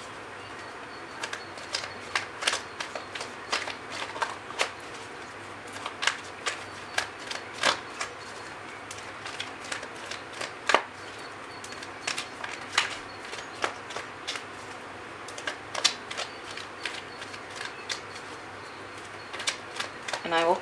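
A tarot deck being shuffled by hand: irregular sharp snaps and slaps of the cards, a couple every second.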